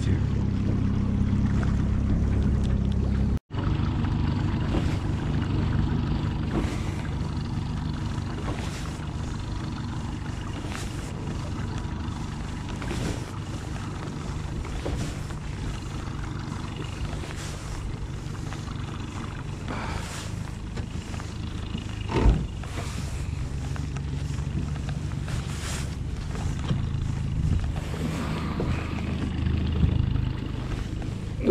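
Outboard motor running steadily at low speed, with a momentary dropout about three and a half seconds in.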